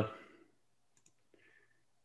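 A man's word trailing off, then near silence on the call line with a few faint clicks.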